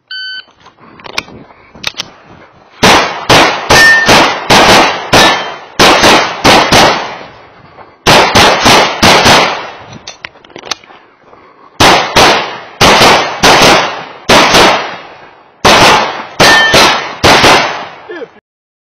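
Shot-timer start beep, then a compensated open-division 9mm major race pistol firing fast strings of shots, in four bursts with short pauses between them for movement.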